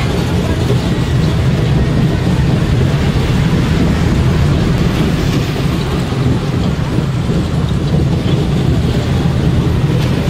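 Steady low rumble of a moving fairground ride, with wind buffeting the phone's microphone as the ride swings round.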